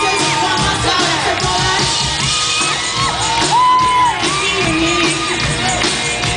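Live band music played loud through a concert PA, with a melodic line of held notes gliding up and down, most likely a sung vocal.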